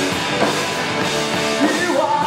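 Live rock band playing loudly: electric guitars and a drum kit going together at full volume.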